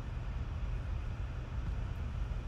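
Steady low rumble with a faint hiss: background room tone or microphone hum, with no distinct events.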